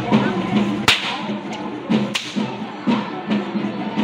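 Two sharp cracks of perahera whips (kasa), about a second in and a little past two seconds, over steady rhythmic drumming of about two beats a second.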